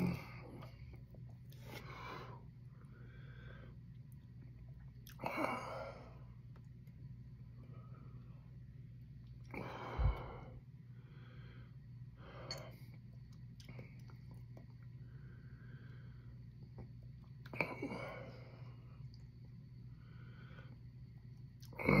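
A man's sharp, noisy breaths and exhales every few seconds as he suffers the burn of a superhot chili pepper, with quiet breathing in between.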